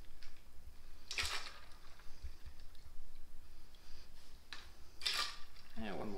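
Apple cider poured from a jug into a metal jigger and tipped into a steel cocktail shaker, with two short splashes about four seconds apart.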